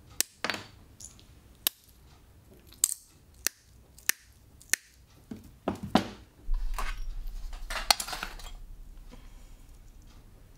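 Glass being cut with hand-held mosaic glass nippers: a series of sharp snaps, each cut spaced about half a second to a second apart. About five seconds in they give way to clinking and rustling as the cut glass pieces are handled on the table.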